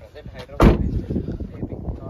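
A Nissan X-Trail's rear side door slamming shut once, a single sharp, loud bang a little over half a second in that rings briefly as it dies away.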